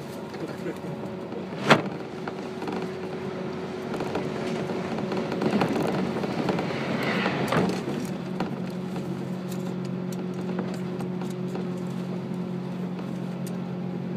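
Cabin noise of a JR 185-series electric train running at speed: steady rolling rumble with a constant hum, a single sharp knock about two seconds in, and a louder rough stretch in the middle before it settles into a lower, even hum.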